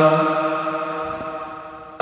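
A man's chanted Quran recitation in prayer, its last drawn-out note fading away steadily over about two seconds.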